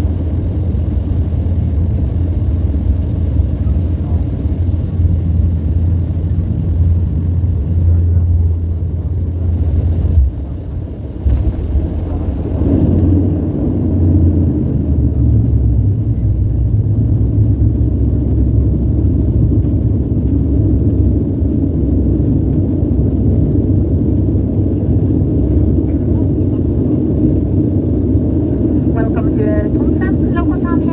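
Turboprop airliner cabin noise during landing: a steady low engine drone with a faint high whine that rises and falls. About ten seconds in the sound dips briefly, then a louder, rougher roar builds from about thirteen seconds as the plane slows on the runway. Near the end a cabin announcement starts over the loudspeaker.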